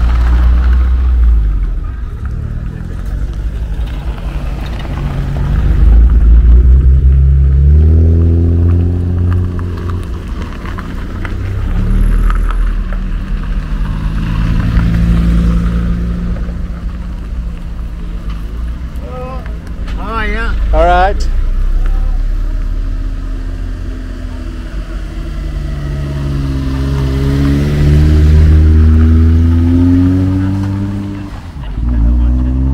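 Classic cars driving past one after another on a gravel road, each engine note swelling as a car approaches and fading as it goes by, about five passes in all. A brief wavering high tone sounds about two-thirds of the way through.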